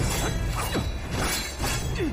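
Sword-fight sound effects: several sharp metallic clashes and swishing blade sweeps in quick succession, over dramatic background music.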